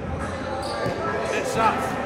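Basketballs bouncing on a hardwood gym floor, echoing in a large hall, with faint voices in the background.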